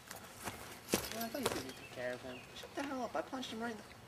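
A male voice talking without clear words, broken into short phrases. It is preceded by a few sharp knocks in the first second and a half.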